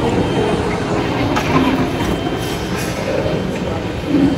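Battery-powered kiddie train ride car running, with steady train-like rumble and clatter, most likely the ride's own recorded train sounds, over the hum of a large indoor space.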